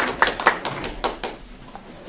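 Applause from a small audience: separate hand claps, thinning out and fading away over the two seconds.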